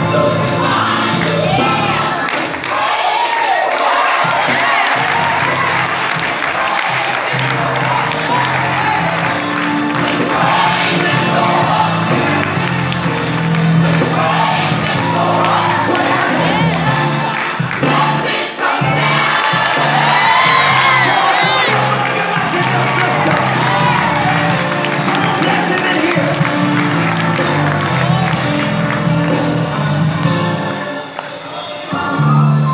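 Recorded gospel song with a lead voice singing over a steady bass line, played loud in a large room, with the congregation's cheering and shouting mixed in.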